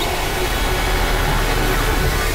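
Dense experimental noise collage: several music tracks layered and processed into a loud, steady wall of sound, with a deep rumble underneath and a few faint held tones.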